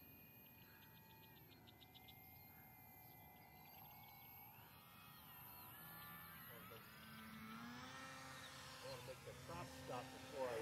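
Faint propeller and motor whine of a radio-controlled model plane flying past low. Its pitch bends up and down and it grows a little louder in the second half, over an otherwise near-silent background.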